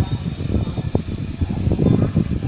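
Passenger train coaches rolling past: a continuous low rumble of steel wheels on the rails, broken by irregular knocks.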